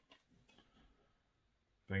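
Mostly near silence, with a few faint handling sounds in the first second as a DVD case and disc are looked over. A man starts speaking at the very end.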